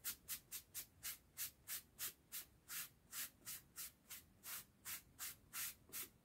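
A sponge wiped in quick repeated strokes over a foam piece, spreading a thin coat of liquid latex. The strokes are soft, faint swishes at about three a second.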